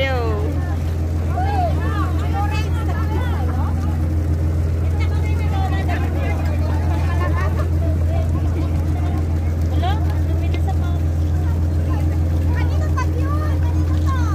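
A sampan's inboard engine running steadily with a deep, even hum, the propeller turning to hold the boat against the pier.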